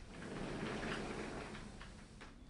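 Glass sliding door being pulled across on its track, a rolling rumble that swells over about a second and fades near the end.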